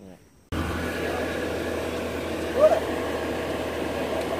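An engine idling steadily, cutting in abruptly about half a second in.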